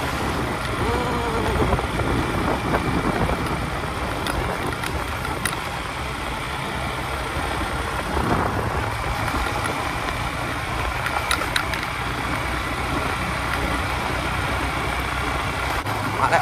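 Small motorcycle engine running steadily on the move, mixed with wind and rumble from a rough, dusty dirt road; an oncoming pickup truck goes past at the start.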